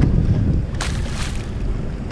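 Wind buffeting the microphone in a steady low rumble, with a brief rustling scrape a little under a second in.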